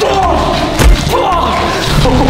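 A heavy thud a little under a second in, amid the scuffle of a staged fight, over music with a wavering melody.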